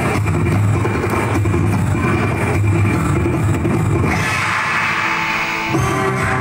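Upbeat Malayalam folk song (nadanpattu) playing loud, with a steady drum beat.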